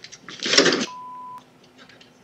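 A man falling on a driveway: a brief loud noisy burst about a third of a second in, as he goes down. It is followed by a steady high beep lasting about half a second.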